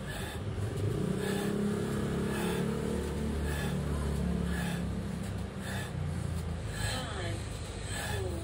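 A motor vehicle engine running, a steady low drone whose pitch rises slowly through the first half, with faint regular ticks about twice a second.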